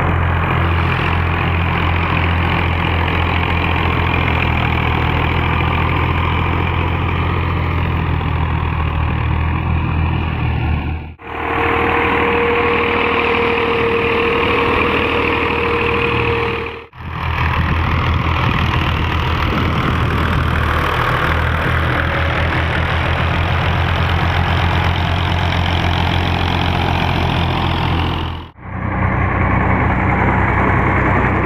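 Fiat and Massey Ferguson diesel tractor engines running steadily as they drag rear levelling blades through sand. The sound breaks off abruptly three times where clips change, and one stretch in the middle carries a steady whine over the engine.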